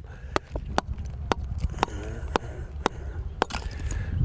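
Hammer striking a steel chisel on stone: sharp, uneven clinks, about two a second, over a low background rumble.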